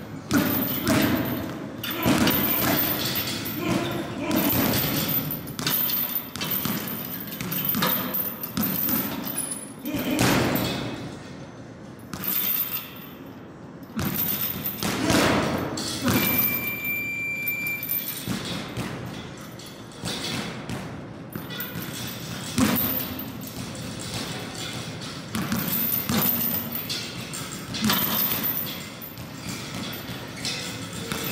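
Boxing gloves striking a hanging round punching bag, a run of repeated thuds. About halfway through, a steady high beep sounds for a second or two.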